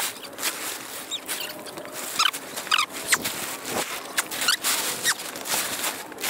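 Plastic tarp crinkling and rustling as it is dragged and spread over a dirt jump, a dense crackle with short high squeaky notes mixed in.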